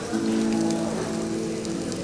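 Background music with long held notes over a steady crackling hiss of meat sizzling on a yakiniku table grill.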